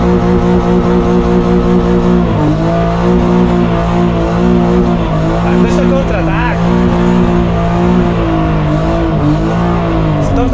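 BMW E36 engine held at high revs through a drift, a steady drone whose pitch dips briefly three times: about two seconds in, midway, and near the end.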